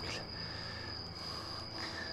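Crickets chirping in a steady, high-pitched trill.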